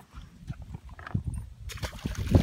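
Irregular low knocks and rustling from a caught largemouth-type bass being handled by the lip over the water, then a short splash near the end as it is dropped back in on release.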